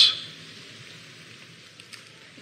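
A man's speech trails off right at the start, leaving a pause filled only by a faint, steady hiss of recording background noise.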